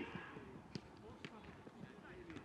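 Football training play: two sharp knocks of a football being struck, under a second apart, about a second in, with faint calls from players.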